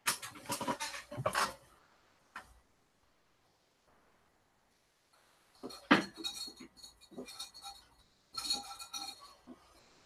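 Clinking and clattering of small hard objects with a bright ringing tone, in three bursts: over the first second and a half, from about six to eight seconds with a sharp knock at the start, and again around nine seconds.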